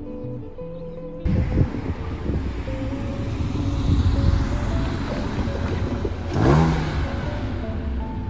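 Background music over street noise that cuts in abruptly about a second in, with a car passing close by near the end, its sound falling in pitch as it goes past.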